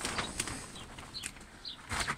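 A few brief high chirps from a small bird in the background, with a few short knocks or clicks.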